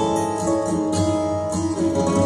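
Clean, plucked guitar picking a slow melody of ringing notes over a steady low drone.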